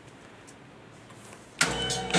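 Faint room hiss, then a hip-hop backing beat starts abruptly near the end, with a deep bass.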